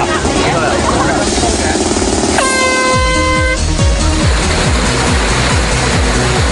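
An air horn gives one steady blast of a little over a second, about midway through, signalling the start of the race's swim. It sounds over electronic dance music, which breaks into a heavy thumping beat right after it.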